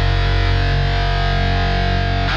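Heavy rock song with distorted electric guitar holding a sustained chord over a strong bass, mixed on a Behringer WING digital console and taken straight from its output without post-processing.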